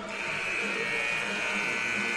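Arena scoreboard horn sounding one steady buzz, held a little over two seconds, marking the end of a timeout before free throws.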